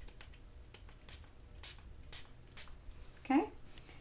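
Small fine-mist pump spritzer bottle sprayed several times: short, high hissy spritzes about every half second.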